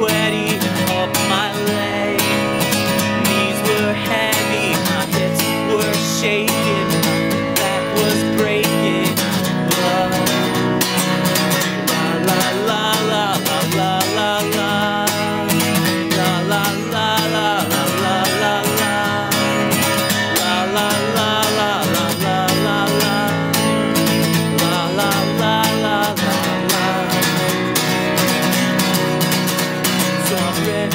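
Acoustic guitar strummed steadily, with a man singing over it live.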